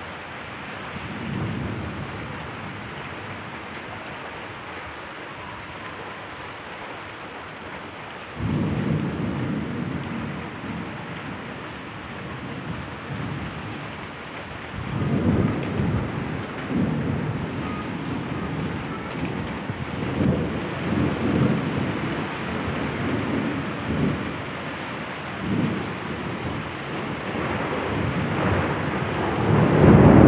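Steady rain with thunder rolling through it: a faint rumble about a second in, a sudden clap about eight seconds in, then repeated rolls of thunder through the second half, building to the loudest near the end.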